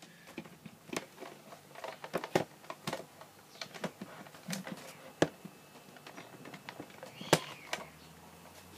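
Irregular light clicks and knocks, about one or two a second, with a sharper knock near the end: handling noise from the recording device while its lens is covered.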